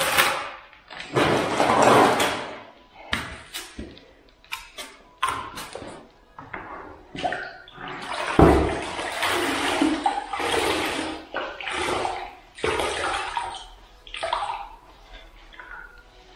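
Water splashing and sloshing in a bucket as a hand works a sponge in it, in irregular bursts.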